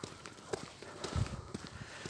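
Footsteps on snow-covered ground, a few scattered crunches and soft low thumps of walking.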